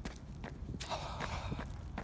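Footsteps on asphalt, a few steps about two a second, over a steady low rumble.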